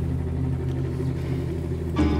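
Small motorcycle engine idling steadily.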